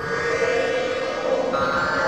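Synthesizer chord held steady in an electronic body music track, with a higher note joining about one and a half seconds in and no beat underneath.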